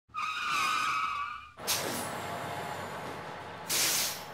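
Vehicle sound effects: a tyre squeal lasting about a second and a half, cut off by a sudden whoosh into steady vehicle noise, then a short loud hiss near the end.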